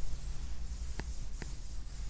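Stylus writing on an interactive whiteboard screen: soft scratching strokes with two light taps, one about a second in and another just after, over a steady low hum.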